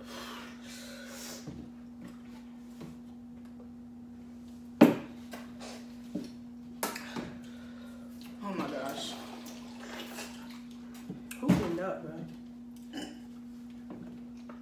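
Water poured from a plastic pitcher into a plastic cup for about a second, about two-thirds of the way through. Earlier there is a single sharp knock, like a cup set down on a table. A steady low hum runs underneath.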